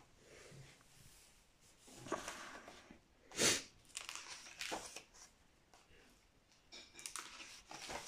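Paper rustling as the pages of a large book are handled and turned: a few soft swishes, the loudest about three and a half seconds in, and another rustle near the end as a new page is turned.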